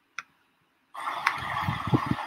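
A single computer-mouse click on the play button, then about a second in the hiss of a video's soundtrack starting up, with a few soft low bumps and faint ticks.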